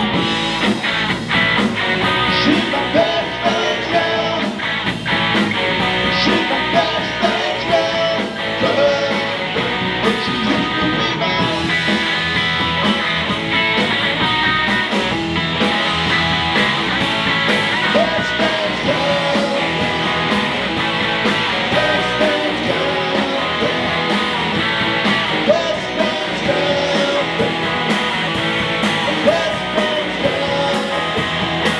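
Live rock band playing loudly: electric guitar, bass guitar and drums, heard in the room.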